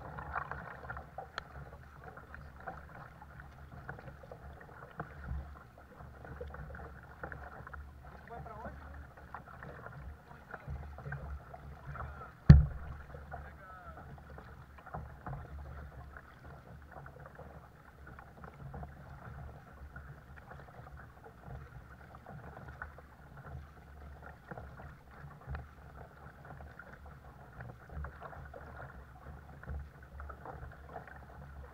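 Paddling a Caiman 100 sit-on-top sea kayak: the paddle blades dip and splash in the water at an irregular, unhurried pace over a steady wash of water and wind. A single sharp knock about twelve seconds in is the loudest sound.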